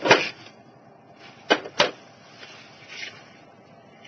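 Thin plastic Lego baseplates being handled and knocked together: a loud clack at the start, two sharp clicks a third of a second apart about a second and a half in, then a faint rustle near the end.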